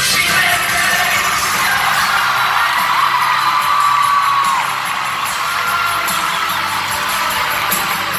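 Live pop-rock band playing, with the concert crowd whooping and cheering over the music; a single held high note rises above the mix for about a second and a half near the middle.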